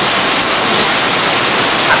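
Loud, steady hiss of recording noise with no other sound in it; a man's voice starts again right at the end.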